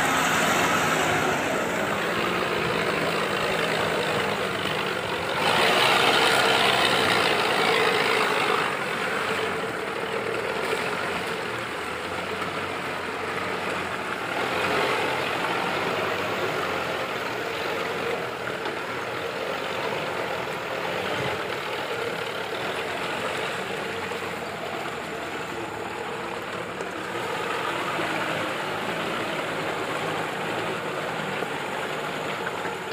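Toyota Land Cruiser hardtop's engine running steadily as the 4x4 crawls through muddy ruts, swelling louder under load for a few seconds about six seconds in.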